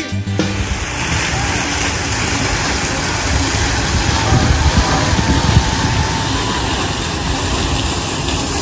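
Fountain water jet gushing and splashing into its basin, a steady rushing noise with a low rumble.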